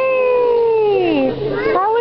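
A child's long, high-pitched excited cry that slides down in pitch over about a second, then a shorter rising cry near the end.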